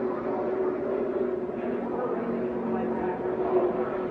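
NASCAR Cup stock cars' V8 engines running at speed: a steady, unbroken drone with held tones as the field passes.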